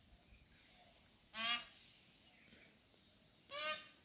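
A bird calling twice, two short pitched calls about two seconds apart, with faint high chirping near the start and end.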